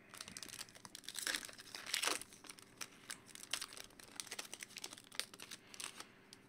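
Plastic crinkling and a quick run of light clicks as trading cards and a clear plastic card sleeve are handled, with the loudest crinkles a little over a second in and around two seconds in.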